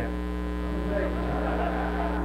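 Steady electrical mains hum, with a faint background hiss or murmur coming up about a second in.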